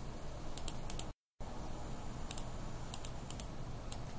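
A few light clicks of laptop keys, in small groups over a faint steady hiss. The audio drops out completely for about a quarter second just after the first group.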